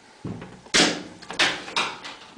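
Handling noise from a glass measuring jug being moved and set down on a counter: three short knocks, the first and loudest about a second in.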